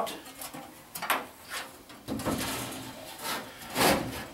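Furnace blower assembly's sheet-metal housing scraping and knocking as it is handled and lifted onto the top of the cabinet: a series of short rubs and bumps, a longer scrape in the middle and the loudest scrape near the end.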